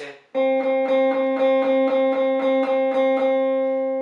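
Jackson V-shaped electric guitar picking one note, the fifth fret on the G string, twelve times in an even rhythm of about three notes a second. It starts about a third of a second in.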